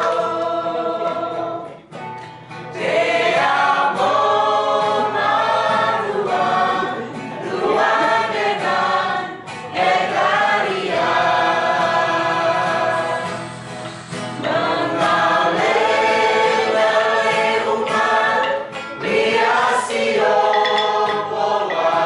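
A group of voices singing together as a choir, in phrases of held notes with short breaks between them.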